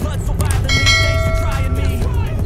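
A single bell chime sound effect, a cluster of steady ringing tones that starts a little under a second in and holds to the end. It is laid over background music.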